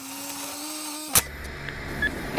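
Electronic logo-sting sound effect: a steady hum tone that holds for about a second and is cut off by a sharp click, then a low drone.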